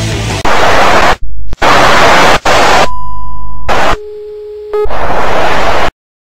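A rock track breaks off about half a second in. Very loud static-like hiss takes over and cuts out abruptly several times, with steady electronic beeping tones in some of the gaps, then stops dead near the end.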